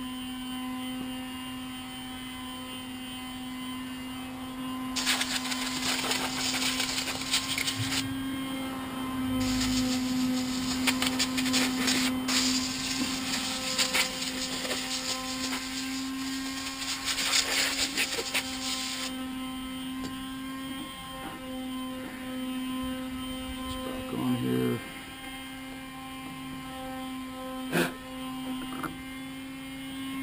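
Compressed air hissing from an air blowgun in two long bursts, one of about three seconds and one of about ten, over a steady background buzz, with a few knocks and a click near the end.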